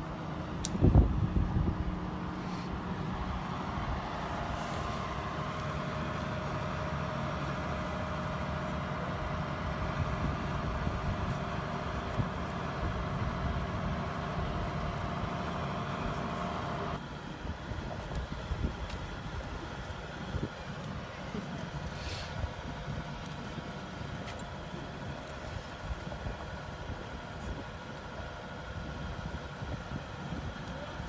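A boat travel hoist's engine and hydraulics running steadily under the load of a sailing yacht in its slings, then dropping suddenly to a quieter, lower run a little past halfway. There is a short low knock near the start and a brief hiss about two-thirds of the way through.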